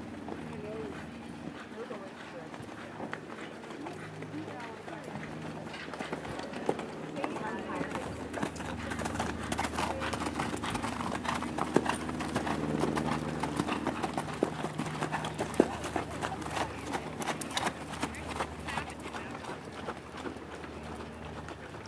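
Horse hoofbeats on arena footing, growing louder and denser about halfway through as horses pass close by, over background talk.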